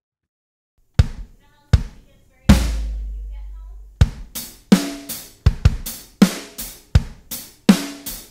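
Drum kit played: after about a second of silence, three separate hits, the third a heavy low hit that rings out for about a second and a half. Then a steady beat starts about four seconds in.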